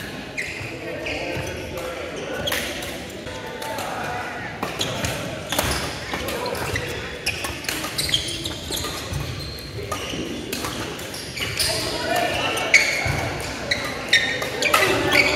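Badminton rackets hitting a shuttlecock and shoes on a wooden gym floor during a doubles rally, a string of short sharp strikes, with people talking in the background of the echoing hall.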